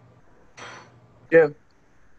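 A short spoken "yeah" just past the middle, with a brief, softer clatter about half a second in, over low room tone and a faint steady hum.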